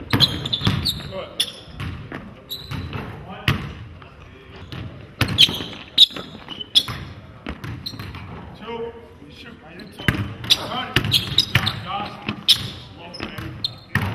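Basketball bouncing on a hardwood gym floor during a shooting drill: sharp, irregular impacts that echo in the large hall.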